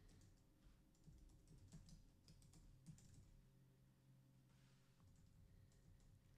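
Faint computer keyboard typing: scattered soft key clicks, mostly in the first half, over a low steady room hum.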